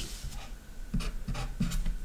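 Marker pen writing on a white surface, a few short strokes drawing an arrow, starting about a second in.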